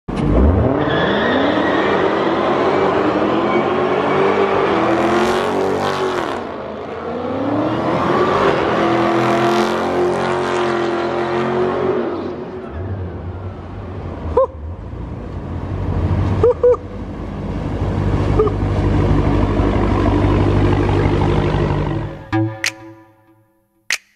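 Dodge Charger SRT8 392's 6.4-litre Hemi V8 revved hard during a burnout, the rear tyres spinning and smoking on concrete; the engine note rises in sweeps and is held high. About halfway through it settles to a steadier, lower engine note, broken by a few short high chirps.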